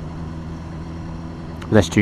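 Motorcycle engine running steadily while riding along at an even pace, with road and wind noise. A man's voice comes in near the end.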